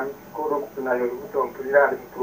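Speech only: a person talking in short phrases.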